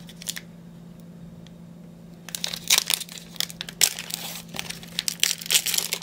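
Foil trading-card pack wrapper crinkling and tearing as it is opened and the cards pulled out, starting about two seconds in after a quiet moment.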